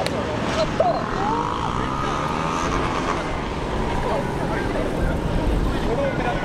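Honda NSR250R two-stroke motorcycle engine revving up and down as it is ridden hard through tight cone turns, the revs rising and falling repeatedly.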